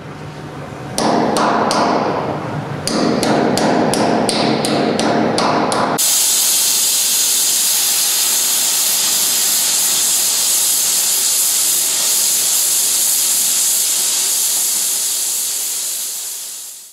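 Metal tool hammering on the steel firebox plate of a steam locomotive boiler: a quick run of sharp, ringing blows, a short pause, then a second run. About six seconds in, this gives way suddenly to a steady loud hiss.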